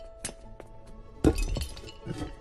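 Glassy clinks and tinkles of the cartoon's glowing stars knocking together: a few light clinks, then a louder cluster about a second and a quarter in, over soft sustained music.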